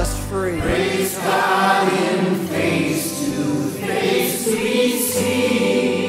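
Mixed choir of men's and women's voices singing a hymn, holding long sustained notes.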